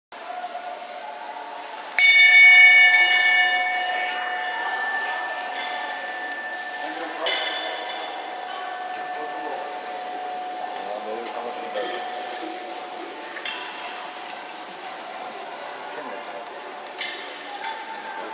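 A bell struck once, loud, ringing with many overtones and fading away over several seconds; a second, fainter strike follows about five seconds later. It is the judge's bell that signals the start of the cone-driving round.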